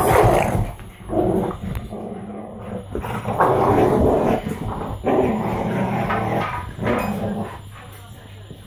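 A Staffordshire bull terrier and an American bulldog growling at each other in play while tugging on a rope toy, in several bouts of a second or more with short breaks between.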